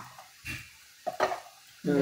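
A few short plastic knocks and clatters from handling a plastic vegetable chopper's bowl while tomato pieces are put into it: one about half a second in and two close together just after a second.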